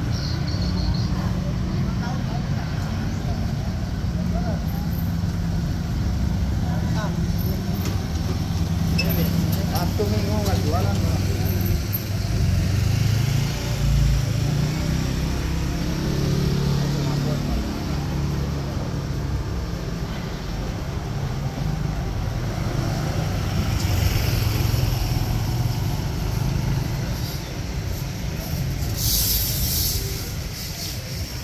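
Busy street ambience: motorcycle and car engines running and passing, with people's voices in the background.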